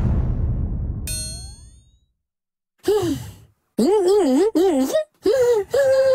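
A heavy cartoon thud sound effect as a huge sack drops, dying away over about two seconds, with a short falling-pitch boing-like tone about a second in. After a pause, a voice makes wordless, sing-song mumbling sounds that waver up and down in pitch.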